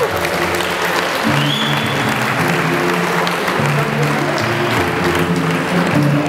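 Audience applauding in a large hall over music from the sound system, with one high whistle from the crowd about a second and a half in.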